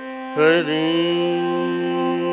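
Carnatic raga performance in Shuddha Dhanyasi over a steady drone. About a third of a second in, a louder melodic note enters with a sliding ornament and then settles into a long held tone.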